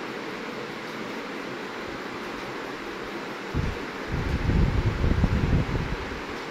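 Steady low hiss, then from about three and a half seconds a dense, uneven low rumble on the microphone, the loudest sound here, typical of a hand-held phone being moved or rubbed while dough is cut with a knife on a wooden board.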